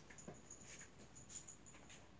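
Near silence, with a few faint clicks and taps from a dog moving about on foam floor mats.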